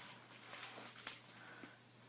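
Very quiet room with faint soft ticks and rustles of wooden knitting needles and yarn being handled as a stitch is worked.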